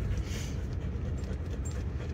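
Steady low rumble of engine and tyres heard inside a moving car's cabin.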